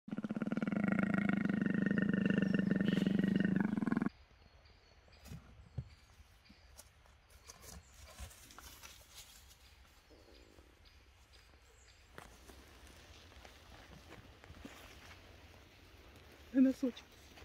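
A big cat's growl, one steady pitched call about four seconds long that cuts off suddenly, followed by faint outdoor quiet with a few soft rustles and ticks.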